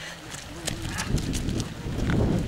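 Running footsteps on a muddy dirt path passing close by, a few short knocks, then a low rumble of wind on the microphone building from about a second in.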